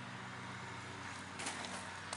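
Faint steady low hum with an even hiss behind it, and a brief faint tap about one and a half seconds in.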